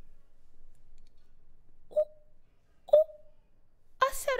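Two short sharp clicks about a second apart, each trailing a brief ringing tone; the second is louder.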